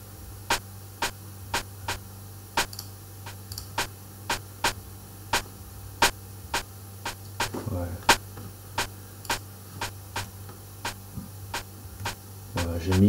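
Sampled rimshot part of a kizomba beat played back on its own: short, sharp dry clicks about two a second in a syncopated pattern, over a steady low hum.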